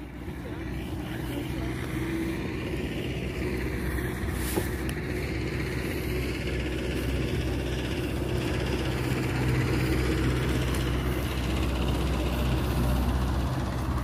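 A steady, low engine-like rumble with a droning hum that builds over the first couple of seconds and then holds.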